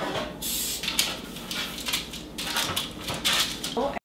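Cooking-oil spray can hissing in several short bursts onto parchment in metal cake pans.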